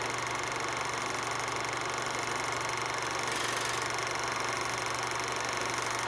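A steady hiss with a low hum underneath, unchanging throughout.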